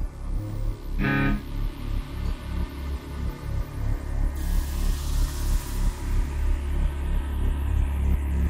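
Metal band playing live: electric guitar and bass over a heavy, steady low rumble with a pulsing rhythm. A short ringing guitar chord sounds about a second in, and a cymbal wash swells up about halfway through.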